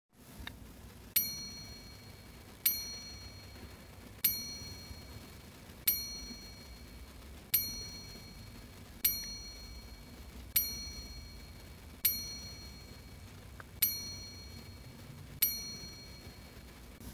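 A bright, bell-like ding repeated ten times at an even pace, about every second and a half, each ring fading within a second. It is likely an added chime effect, one ding for each toy that pops into view.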